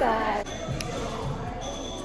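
A voice briefly at the start, then the background noise of a large room with a faint high-pitched steady tone and a single click.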